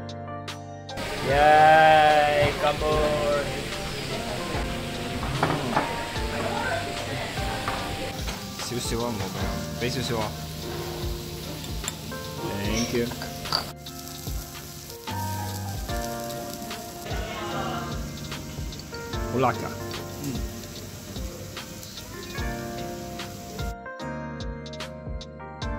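Lamb and vegetables sizzling on a cast-iron grill plate, with voices in the background. Near the start comes a loud, wavering bleat-like call.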